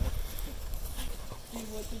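A low rumble runs throughout, and a person laughs softly near the end.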